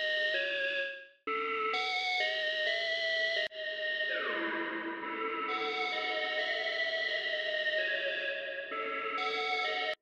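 Beat-in-progress melody loop: a synth flute one-shot playing held notes that step in pitch over a soft bass, washed in reverb. It cuts out briefly about a second in and restarts, and one note slides down in pitch near the middle.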